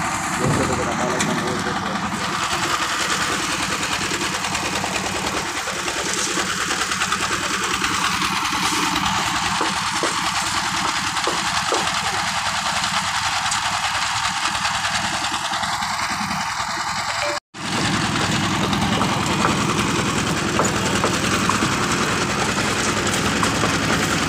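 Engine of a drum concrete mixer running steadily at a roof-slab pour, with a constant low hum under a wide, even noise. The sound drops out for an instant about three-quarters of the way through.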